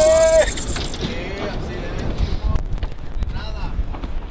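A man's drawn-out, rising shout that ends about half a second in, then a steady low rumble with faint voices on a boat.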